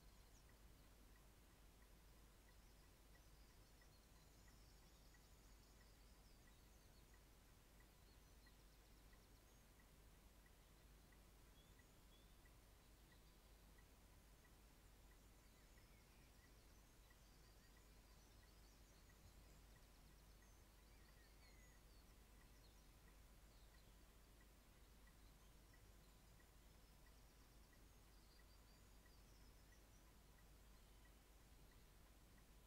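Near silence: faint room tone, with scattered faint high chirps.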